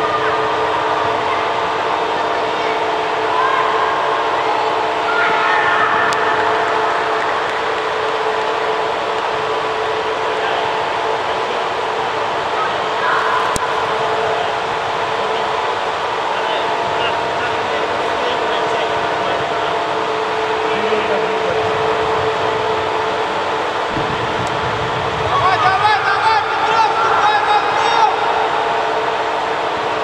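Steady droning hum of a large indoor football hall. Over it come scattered, echoing shouts of players on the pitch, with a louder burst of several voices shouting near the end.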